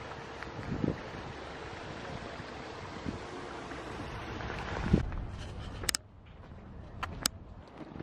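Steady rush of a small garden stream and waterfall running over rocks, with a few low thumps. About six seconds in the rushing drops away to a quieter background with a couple of sharp clicks.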